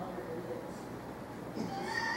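Faint, indistinct voice praying aloud over a group, louder and higher-pitched near the end.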